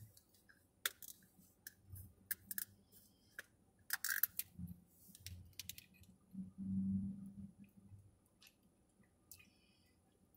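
Plastic drink bottle being handled and its screw cap twisted open, with a run of sharp clicks and crackles over the first four seconds or so. Then drinking from the bottle, with low gulping sounds about six to seven seconds in.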